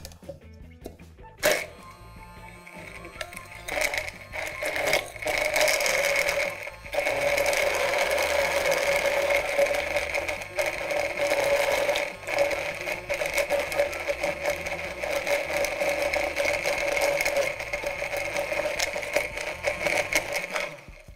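Hand-held immersion (stick) blender running in a tall plastic beaker, puréeing a sauce of almonds, garlic and onion in milk: a steady motor whine, with a brief dip about seven seconds in and a few shorter ones after.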